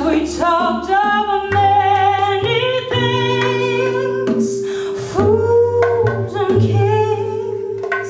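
A live jazz ensemble of saxophones, vibraphone, bass and percussion playing: a sustained lead melody with bending, gliding notes over a held bass line.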